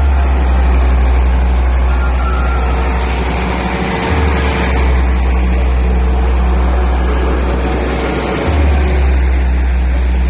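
Very deep sub-bass humming tone from a DJ roadshow sound system, held steady and changing briefly about four seconds in and again near the end, over the broad steady noise of a diesel generator running.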